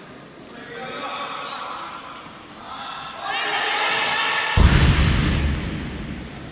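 A loaded competition barbell with bumper plates dropped onto the lifting platform: one heavy crash about four and a half seconds in, the loudest sound, dying away over about a second. Shouting voices rise just before it.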